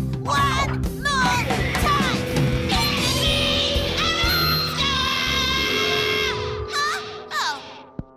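Kids' rock band playing (drums, electric guitar and keyboard) with a girl singing loudly into a microphone; the playing breaks off about seven seconds in, followed by a brief vocal sound.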